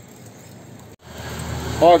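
Low street background that breaks off at an edit about a second in, followed by a rush of road traffic noise that builds steadily, with a man's short spoken "ó" at the very end.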